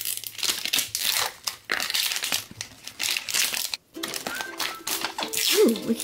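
Thin plastic wrapper crinkling and tearing as it is peeled off a plastic toy bottle by hand, in irregular bursts with a brief pause about four seconds in.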